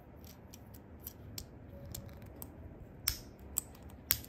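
Plastic LEGO bricks being handled and pressed together: faint light ticks and taps, then two sharper clicks in the last second as a piece snaps on.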